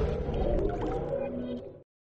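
The tail of a channel's intro music sting, sustained electronic tones fading out to silence near the end.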